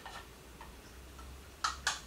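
A coffee stirrer clicking against the side of a small pot as red paint is stirred into gum arabic: mostly quiet, then a few quick light taps near the end.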